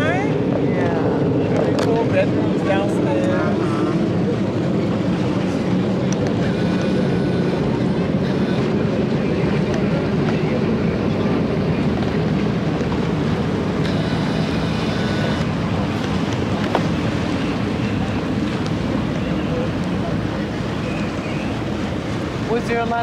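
A boat's engine running steadily under way: an even low drone with the wash of water and wind noise over it.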